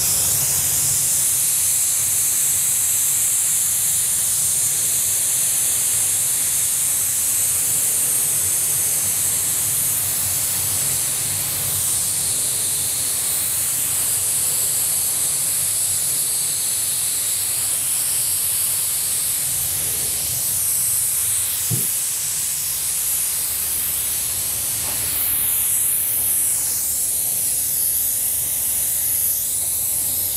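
Gravity-feed paint spray gun hissing steadily as compressed air atomises a coat of candy blue paint.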